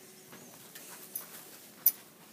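Quiet classroom room tone with a few faint taps, then one sharp click near the end.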